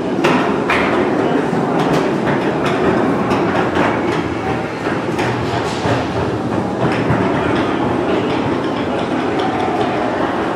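Steady din of a busy indoor space, with scattered knocks and clatter that are thickest in the first four seconds.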